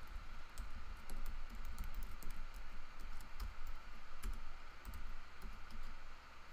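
Typing on a computer keyboard: a run of irregular key clicks as a short command is typed out.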